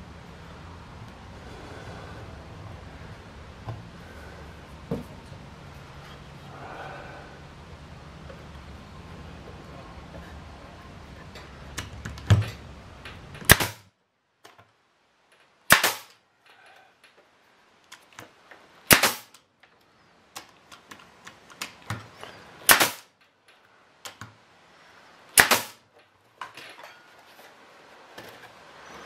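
Pneumatic brad nailer firing five times into fence-board wood, each shot a single sharp crack, a few seconds apart, starting about halfway through.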